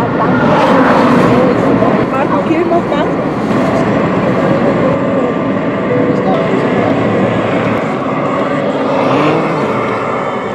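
Car driving along a highway, heard from inside the cabin: steady road and engine noise, with a voice talking over it.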